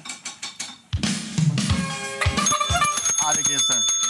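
The intro of a 1980s pop song played back for a name-that-tune round: it starts suddenly about a second in with drum kit hits on bass drum and snare, and held chord tones come in over the beat about halfway through.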